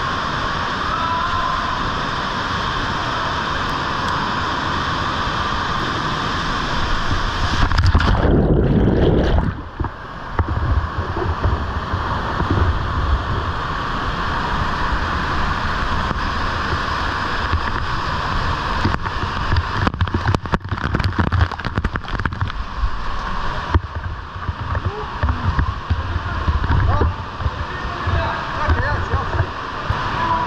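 Heavy waterfall of a canyon stream swollen by rain, a steady rush of falling water. About eight seconds in it swells louder and deeper for a second or two. From then on it is choppy and gurgling with many low knocks, as of churning white water right at the microphone.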